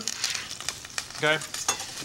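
Bacon wrapped around a thyme bundle sizzling in hot olive oil in a saucepan, with scattered crackles, as the bacon starts to render.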